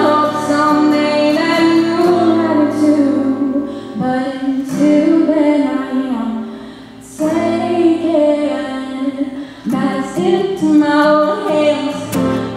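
A young woman singing a country song solo, accompanying herself on a strummed acoustic guitar, with a brief lull between phrases about seven seconds in.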